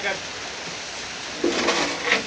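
Steady hiss of rain falling, with men talking over it in the second half.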